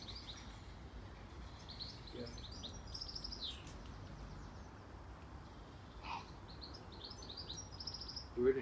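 Small birds chirping in quick high runs, one about two seconds in and another near the end, over a faint steady low outdoor background noise.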